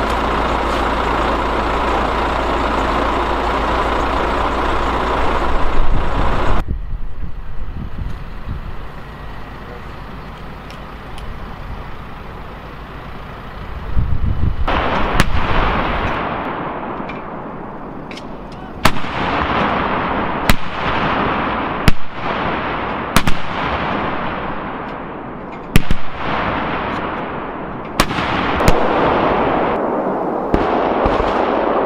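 Towed field howitzers firing: a deep, loud boom about fourteen seconds in, then a string of sharp reports every second or two through the second half, each with a rolling echo. For the first six seconds or so a vehicle engine runs steadily.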